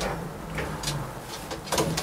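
Quiet room tone with a low hum and a couple of faint soft ticks or rustles.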